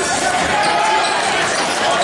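Basketball game in a gym: a ball bouncing on the hardwood court under a continuous din of players' and spectators' voices calling out.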